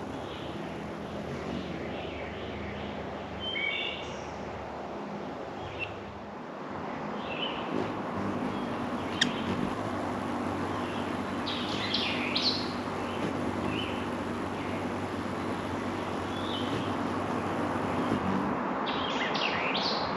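Birds chirping in short calls now and then, with a cluster of quick chirps about twelve seconds in. Under them runs a steady outdoor background with a faint low hum.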